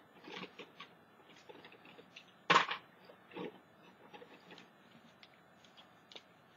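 Small handling noises on a craft table: faint rustles and taps as a card is moved across the desktop, with one short sharp clack about two and a half seconds in.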